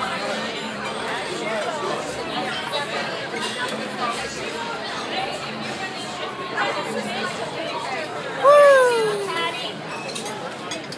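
Restaurant diners talking all at once in a steady babble of chatter. About eight and a half seconds in, one loud call slides down in pitch for about a second, standing out above the talk.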